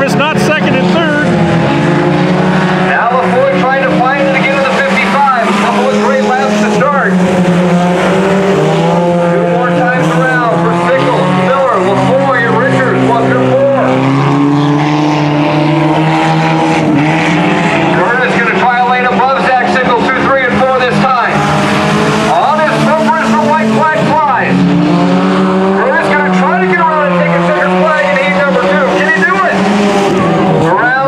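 Several sport compact race cars racing on a dirt oval, their engines running hard. The engine pitch rises and falls over and over as the drivers get on and off the throttle through the turns.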